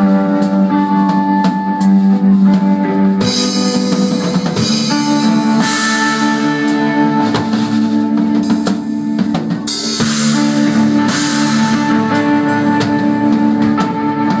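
Live instrumental metal from an electric guitar and a drum kit: the guitar holds long sustained notes while the drums play underneath, with cymbal crashes every few seconds.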